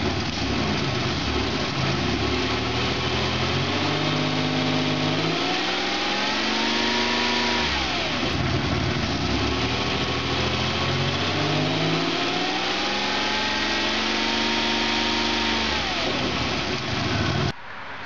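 1989 Oldsmobile Cutlass Ciera engine revved up twice from idle, each time climbing for about five seconds and then dropping back. The exhaust is venting through a hole cut ahead of the catalytic converter. This is a back pressure test: with the converter bypassed the pressure stays under 1 PSI even at higher throttle, which leaves the owner pretty confident the converter or muffler is stopped up.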